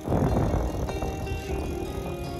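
Wind rumbling on the microphone and rolling noise from riding a bicycle, loudest in the first second, over background music of steady held notes.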